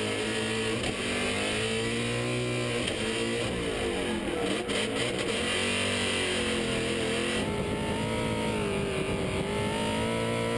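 V8 engine of a Toyota Corolla drift car, heard from inside the cabin, revving up and down over and over as the throttle is worked mid-drift.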